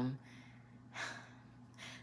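A woman's audible breath in a pause between phrases: a short breathy rush about a second in, then a fainter breath near the end.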